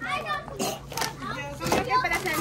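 Children's voices talking and chattering, with a few short knocks.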